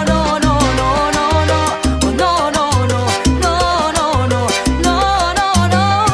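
A salsa band recording playing. A repeating bass line and steady percussion run under wavering melodic lines, with no clear lead vocal.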